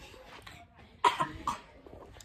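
A person coughs twice in quick succession, the first about a second in and the second half a second later.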